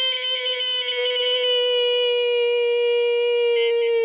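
A man's voice holding one long, high "wheee" at a nearly steady pitch.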